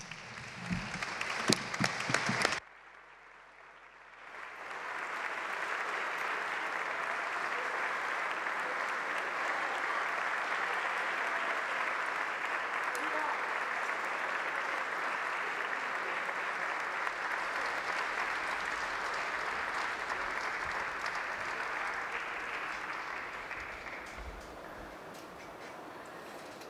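Applause from a large roomful of legislators clapping. After a brief quiet it builds over about a second, holds steady and sustained for nearly twenty seconds, then fades away near the end.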